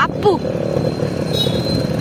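Motorcycle engine running with road and wind noise while riding, a steady drone under a dense rumble, with a brief fragment of voice in the first half second.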